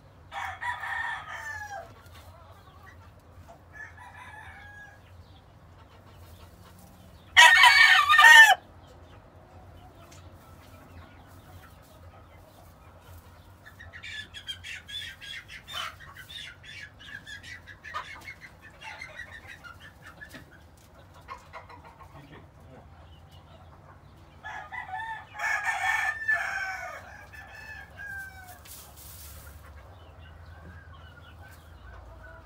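Gamecock crowing three times: a short crow just after the start, a very loud crow about eight seconds in, and a longer one about 25 seconds in. In between come soft clucks and clicks as it pecks and scratches in the straw.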